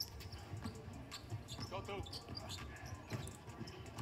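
Faint game sound of a basketball being dribbled on a hardwood court, a series of short bounces over the low rumble of the arena, with a brief faint pitched sound about two seconds in.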